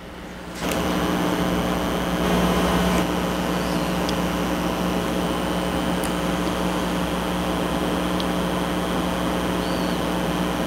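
Steady background hum with a hiss over it, starting suddenly under a second in, with a few faint ticks.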